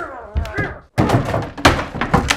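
A man lets out a strained yell. From about a second in, a wooden bed frame takes a quick run of heavy thuds and knocks as he wrenches and batters it.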